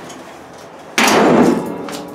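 A car hood being slammed shut: one loud metallic impact about a second in, ringing briefly before it dies away.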